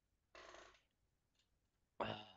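Near silence, with one brief faint sound about half a second in.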